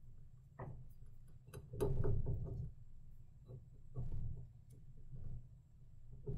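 Hands pressing and smoothing a glue-coated paper napkin over the bottom of a glass mason jar: soft, irregular rubbing and handling noises with a few light clicks, loudest about two seconds in and again around four seconds.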